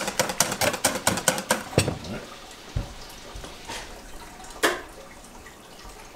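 Wire whisk beating thin malawax batter in a stainless steel bowl, the rapid strokes clicking against the metal about five times a second, then stopping about two seconds in. A couple of single knocks follow.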